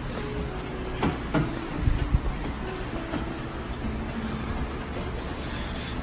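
Steady low running noise of a stationary exercise bike being pedalled, with a few knocks about one to two seconds in.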